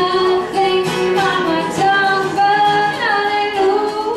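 A teenage girl singing long, held notes with her own acoustic guitar accompaniment, the voice sliding down in pitch about three seconds in.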